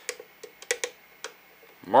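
About half a dozen light, unevenly spaced clicks from a precision screwdriver working small screws in the lamp's plastic housing. A short spoken word comes near the end.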